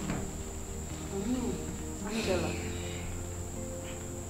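Soft background film score of sustained low chords, changing about two seconds in, with a few short gliding notes, over a constant thin high-pitched tone.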